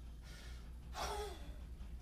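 A lifter's short, forceful breath out with a bit of voice, falling in pitch, about a second in, as a 32 kg kettlebell comes down from overhead to the rack position during one-arm jerks.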